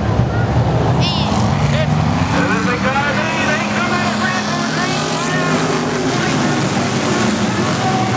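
A pack of hobby-class dirt track race cars running laps together, their engines blending into a steady drone, with indistinct spectator chatter close by.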